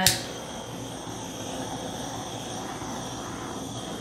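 Handheld butane torch running with a steady hiss of its flame, played over wet poured acrylic paint to pop air bubbles. A sharp click comes at the very start.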